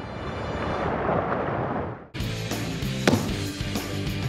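A rushing roar swells and then dies away about halfway through. A music sting follows, with one sharp booming hit about a second later.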